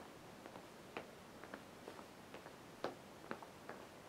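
Faint, irregular soft taps of sneakers stepping side to side on a floor, over quiet room tone.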